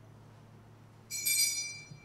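A single metallic clink about a second in, with one clear high tone ringing on as it fades: a metal chalice being set down on the altar against the other altar vessels.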